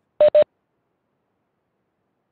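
Two quick electronic beeps of the same pitch, one straight after the other, a quarter second in.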